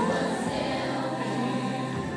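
A children's choir singing together, holding long notes.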